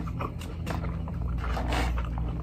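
Plastic forks and a spoon clicking and scraping against black plastic takeout containers during a meal, with light chewing. A steady low hum runs underneath.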